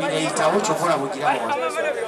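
Chatter: several people talking at once close to the microphone, their voices overlapping.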